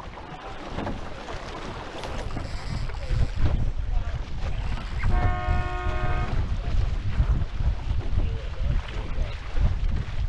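Wind buffeting the microphone and water rushing along the hulls of an F18 racing catamaran under sail, growing a little louder over the first few seconds. About halfway through, a steady pitched tone sounds for just over a second.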